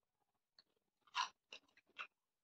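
A person chewing food close to the microphone: a few short crunches, the loudest just after a second in.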